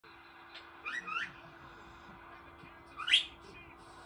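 Three short, high, rising whistle-like chirps: two in quick succession about a second in, and a louder one about three seconds in, over a faint steady hum.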